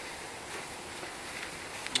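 Faint rustling of a fabric telescope light shroud being handled and bunched over the top of the tube, over a low steady background hiss, with a short click near the end.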